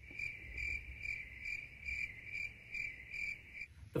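Cricket chirping, a high trill that pulses about three times a second and stops shortly before the end, over a faint low rumble.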